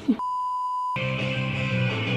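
A single steady electronic beep, one pure tone lasting under a second, cutting off abruptly as background music starts about a second in.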